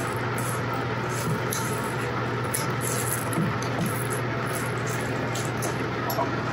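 Wooden spoon stirring thick cornbread batter in a ceramic mixing bowl, with repeated soft scrapes, over a steady low hum.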